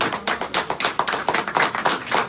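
A small group of people applauding, a quick dense run of sharp hand claps.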